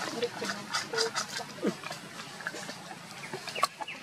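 Short, scattered animal calls: brief low notes, one falling call, and a few high chirps near the end, among many sharp clicks and ticks.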